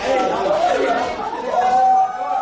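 Several people talking and shouting over one another, with one voice drawn out on a steady pitch for about half a second near the end.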